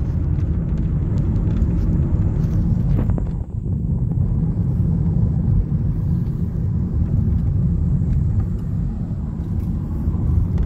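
Road and engine noise inside the cabin of a moving car: a steady low rumble, dipping briefly a little over three seconds in.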